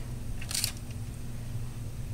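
A brief rustle of handling at the foil-lined baking pan, from the probe thermometer being moved between chicken breasts, about half a second in. It sounds over a steady low hum.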